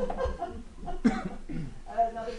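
Indistinct talk among people in a meeting room, with a sharp cough about a second in that is the loudest sound.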